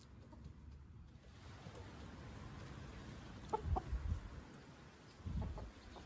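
Chickens clucking faintly: a quick pair of short clucks about three and a half seconds in and a few softer ones near the end, each with low thumps.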